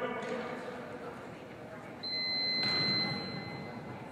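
A steady electronic beep from the QB-Tee training device sounds for a little under two seconds, starting about halfway in. A thud comes shortly after the beep begins.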